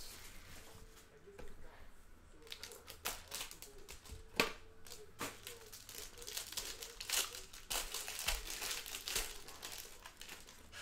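Crinkling and tearing of plastic packaging: cellophane shrink wrap pulled off a hockey card box and crumpled in the hand, then the wrapper of the pack inside handled and torn open, in irregular crackles.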